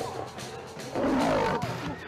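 A big cat lets out a loud roar about a second in, lasting about half a second, over background music.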